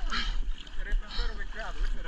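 Water sloshing and splashing against a camera held at the surface, in short hissy bursts about a second apart, over a steady low rumble.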